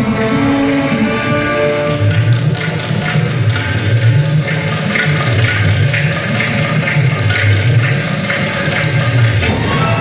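A live band playing instrumental music. Held tones sound for about the first two seconds, then a low bass line pulses under a steady beat of percussion strokes.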